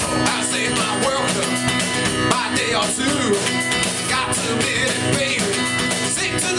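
Live dirty-blues playing by a duo: an acoustic guitar strummed in a driving rhythm over a Mapex drum kit keeping a steady beat, with a man singing.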